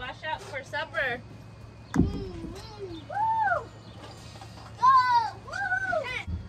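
Children's high-pitched calls and voices in the background, with a single clunk about two seconds in as a filled glass pint canning jar is set down on a wooden board. A low steady hum runs underneath.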